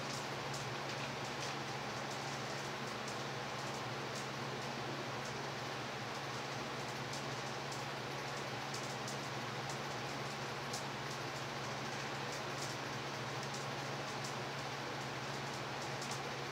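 Steady hiss of room fans and air conditioning running, with a constant low hum underneath.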